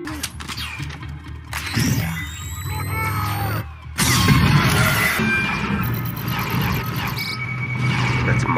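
Film soundtrack from a sci-fi action sequence: music mixed with dense sound effects and sliding tones. It changes abruptly at cuts about one and a half and four seconds in.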